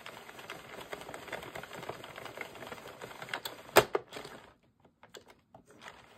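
Hand-cranked plastic circular knitting machine knitting a row, its needles clicking rapidly in a steady run, with one louder click a little before it stops. Only a few scattered ticks follow in the last second and a half.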